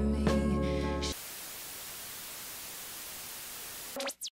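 Music that cuts off about a second in, followed by a steady hiss of TV static.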